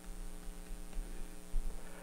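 Steady electrical mains hum picked up by the recording, a stack of even tones with a faint uneven throb at the very bottom.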